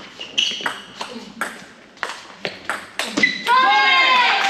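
Table tennis rally: the ball clicks off the rackets and bounces on the table, about eight sharp hits in quick succession. About three seconds in it ends with a shout, and applause starts.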